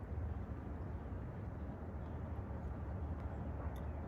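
Steady low background rumble, with a faint click near the end.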